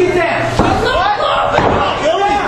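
Crowd voices shouting and calling out, with a single sharp thud on the wrestling ring about half a second in.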